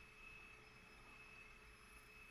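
Near silence: faint room tone and hiss between sentences of speech.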